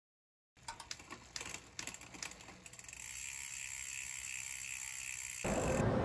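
Bicycle freewheel ratchet clicking as a wheel spins: scattered clicks that speed up into a steady, fast buzz of ticks. Near the end it gives way suddenly to louder outdoor noise.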